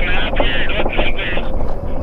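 Electric off-road bike ridden over a rough dirt trail: a wavering high whine comes and goes in short stretches over a steady low rumble of wind and tyres.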